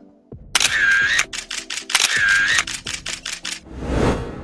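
A short electronic transition sting: a fast run of sharp clicks with a wavering high tone heard twice, then a low rumble that swells near the end.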